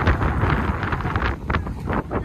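Strong wind blowing across the microphone: a loud, uneven rush, heaviest in the low end, rising and falling with the gusts.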